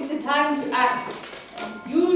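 A young voice singing a line of short held notes, with a longer held note near the end.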